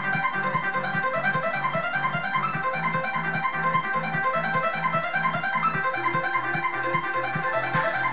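Casio CTK-7000 keyboard playing a trance arrangement: a fast arpeggiated pattern of repeating notes over a pulsing bass line. A high ticking pattern joins near the end.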